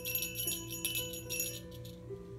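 A small round jingle bell hanging from a cord, shaken by hand in a run of quick jingles that stop shortly before the end. Soft instrumental music plays underneath.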